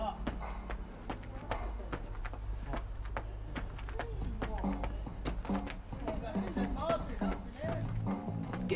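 Trainer-clad feet hopping on hard paving, landing in a steady rhythm of about two to three light taps a second.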